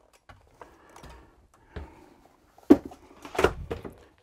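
Handling knocks as a plastic Lasko floor fan is picked up and carried off: light rustling, then a sharp knock and a short clatter of knocks near the end.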